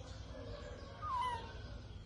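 Newborn baby monkey giving one short, clear cry about a second in that slides down in pitch.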